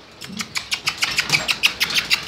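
A pet's claws clicking on a hardwood floor as it walks about, a quick run of sharp ticks that starts about half a second in.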